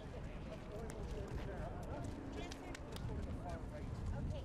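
Faint outdoor background of people talking, with a few scattered light clicks; a man says "okay" near the end.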